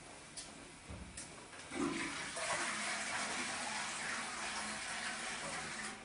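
A couple of faint clicks and a low knock, then a toilet flushing: a steady rush of water for about four seconds that stops just before the end.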